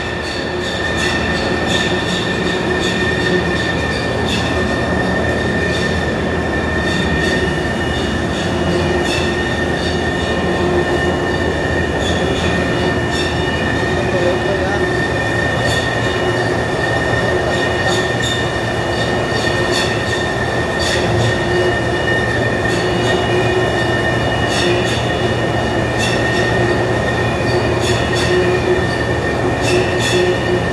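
Steady machinery noise in a steel-coil processing plant: a constant high-pitched whine over a lower hum, with scattered light clicks and knocks.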